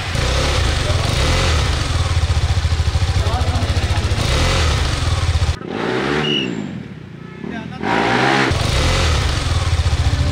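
Single-cylinder engine of a KTM 390 motorcycle running with a fast pulsing beat, then dropping lower about five and a half seconds in and revving up and down a few times.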